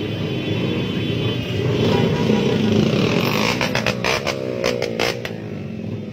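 Motorcycle engines revving together, swelling louder around the middle, with a run of sharp pops in the second half.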